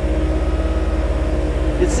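Mecalac 6MCR compact excavator's diesel engine and hydraulics running steadily under working load, with an even low throb and a steady hum above it, as the machine grades with its tilted bucket.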